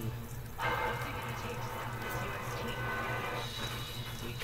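Faint television sound playing in the background of a small room, over a low steady hum.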